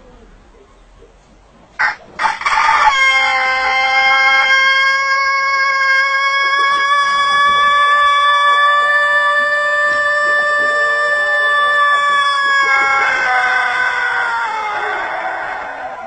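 A rooster crowing one extremely long, steady call, held on a single note for about ten seconds after a couple of short notes about two seconds in, then turning rougher and falling away near the end.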